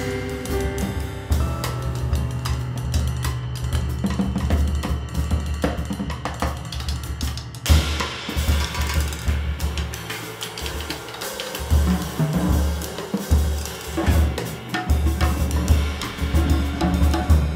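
A jazz ensemble playing, led by a drum kit with snare, bass drum, hi-hat and cymbals over held piano chords and low double-bass notes. A loud crash comes about eight seconds in, and the cymbals ring on brightly after it.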